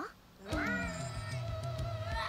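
A cartoon character's long, strained vocal effort starting about half a second in, its pitch sliding slowly down, over background music: Eda straining to turn into her harpy form.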